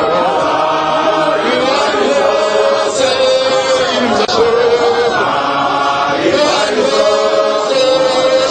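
A group of voices singing a hymn together without accompaniment, in long held notes.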